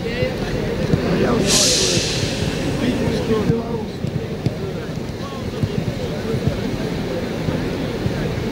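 Indistinct voices of footballers talking over a steady low rumble of wind on the microphone, with scattered small knocks. A brief hissing burst comes about a second and a half in and lasts around two seconds.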